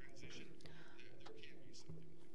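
Faint, low speech of a man talking into a microphone, heard beneath a pause in the louder interpreted voice, over a faint steady hum.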